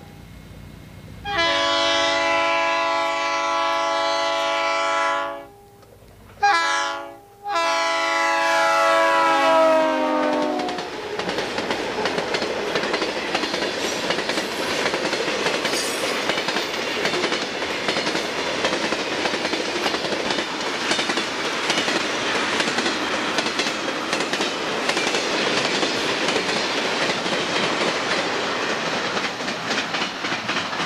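Diesel freight locomotive's air horn, several notes at once, sounding the end of a grade-crossing signal: a long blast, a short one, then a long one whose pitch drops as the locomotive passes. Then the freight cars roll by with a steady rumble and clatter of wheels on the rails.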